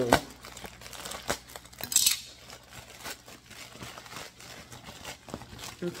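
Crinkling and rustling of clothing packaging being handled and opened, with scattered small ticks, a sharp click at the start and a brief louder rustle about two seconds in.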